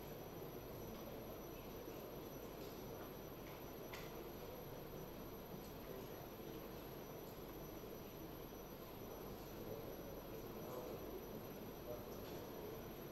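Faint room noise: a steady hiss and low hum, with a few soft clicks.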